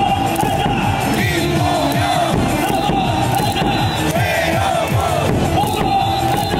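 A baseball team's lineup song playing loudly over a stadium's loudspeakers, with a large crowd of fans chanting and cheering along. The sound is steady and dense, without breaks.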